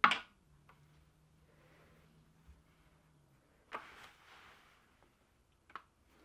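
Rigid heddle loom being worked: a sharp wooden knock at the start as the heddle is moved to change the shed, then a soft rustle of yarn about four seconds in and a faint click near the end.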